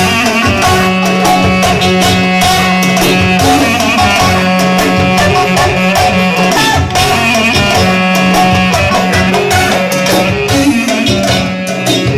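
Live Turkish dance music: a clarinet playing the melody over a steady drum beat and a long held low note.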